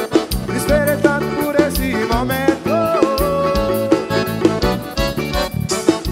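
Forró band playing: an accordion-led melody with held notes over bass and a steady drum beat.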